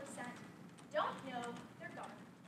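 A young woman's voice giving a prepared speech, in short phrases with brief pauses.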